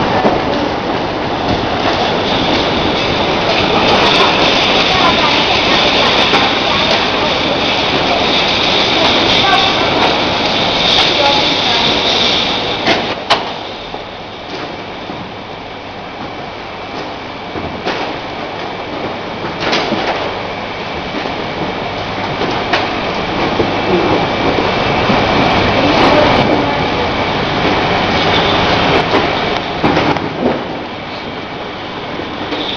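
Bottling-line conveyor running with plastic water bottles rattling and knocking along it: a steady mechanical clatter. A high whine runs through the first half, and a few sharp clicks stand out.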